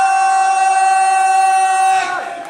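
A man's voice over the arena PA holding one long drawn-out syllable at a steady pitch, the ring announcer stretching out the last word of a champion's introduction; it breaks off near the end.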